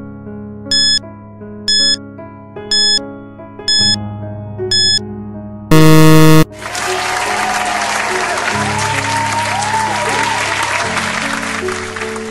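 Quiz-game sound effects over soft keyboard background music: five short countdown beeps about a second apart, then a loud buzzer tone as the timer runs out. After that comes a burst of crowd applause and cheering lasting about six seconds.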